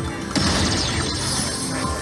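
Ultimate Fire Link slot machine playing its bonus-round music and effects. About a third of a second in comes a sudden crash-like hit with falling high sweeps as the reels spin and new fireballs land, which resets the free spins to three.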